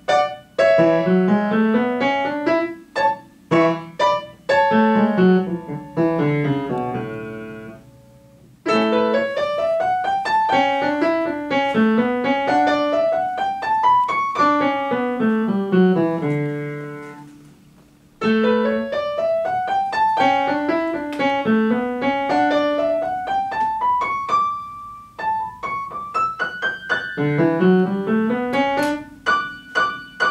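Upright piano played solo: quick rising and falling runs and arpeggios in phrases, with the notes dying away twice, about eight and eighteen seconds in, before the next phrase begins.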